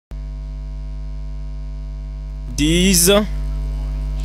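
Steady electrical mains hum with a buzzy row of overtones, starting abruptly just after the beginning, with a short spoken sound through the microphone about two and a half seconds in.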